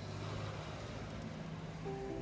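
City street ambience fading in: a steady low rumble of traffic with a hiss over it. Music starts near the end.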